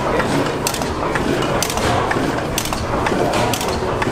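1925 Otto 175 hp natural-gas engine running, a dense mechanical clatter from its valve gear and running parts with sharp clicks about once a second.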